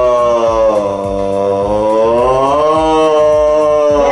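A person's voice holding one long sung note, like a choir's 'ahh', that sags in pitch and rises again a little after halfway.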